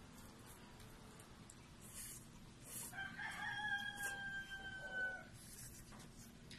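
A rooster crowing once: a single held call of about two seconds, starting about three seconds in and dropping slightly in pitch at the end.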